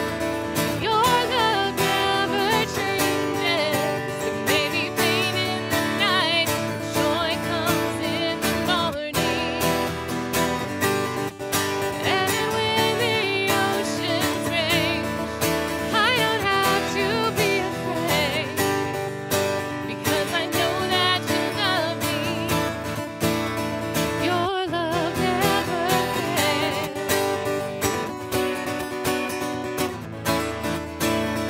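A woman singing a contemporary worship song, accompanying herself on a strummed acoustic guitar.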